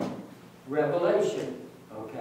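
A man's voice saying a short phrase, too unclear to make out, starting a little under a second in, after a single sharp click at the very start.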